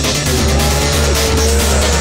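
Background music with the engine noise of off-road race trucks on a dirt track mixed in.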